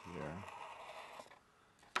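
Fine-point permanent marker drawing a line across creased paper, a soft scratchy stroke lasting under a second, followed by a single sharp click near the end.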